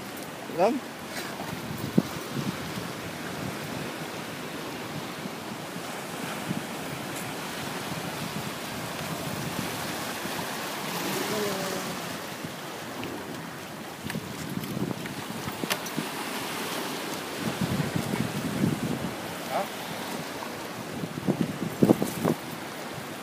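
Surf washing over a rocky shoreline, a steady rush of water that swells a little about halfway through, with wind buffeting the microphone.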